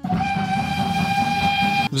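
Steam locomotive whistle sounding one steady, held blast of nearly two seconds that cuts off sharply, over a low rumble.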